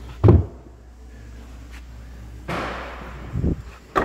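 A hatchback's carpeted boot floor cover is dropped into place with a low thud. Then the tailgate swings down and shuts with a thud and a sharp latching knock near the end.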